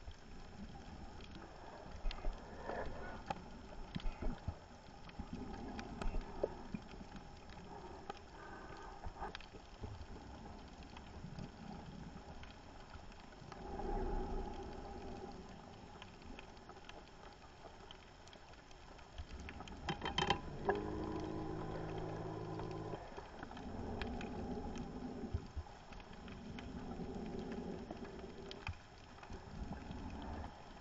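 Scuba diver's breathing heard underwater: exhaled bubbles from the regulator rumbling in bursts every few seconds, one longer burst about twenty seconds in carrying a buzzing tone, with scattered sharp clicks in between.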